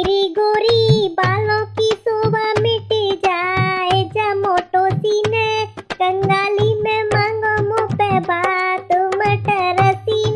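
A woman singing a folk bhaat song in a high voice, with dholak drum beats keeping a steady rhythm underneath.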